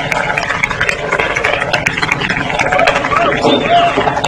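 Spectators at a tennis match, many voices at once, laughing and cheering.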